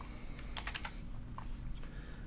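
Typing on a computer keyboard: a quick run of keystrokes about half a second in, then a few scattered ones.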